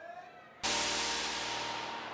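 An electronic dance music track starts abruptly about half a second in. It opens with a loud crash-like wash of noise over a held chord, and the wash slowly fades.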